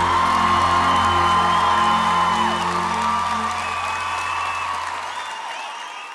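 The band's final held chord rings under a studio audience cheering and whooping, with applause. The chord stops about five seconds in and everything fades out.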